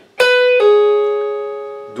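Electric guitar: a note at the 12th fret of the B string pulled off to the 9th fret. The lower note rings on, slowly fading.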